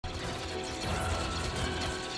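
A Separatist battle droid army marching, a steady, dense mechanical clatter of many metal droids on the move.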